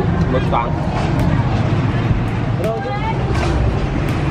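Steady low rumble of a motor vehicle's engine running, with snatches of people talking.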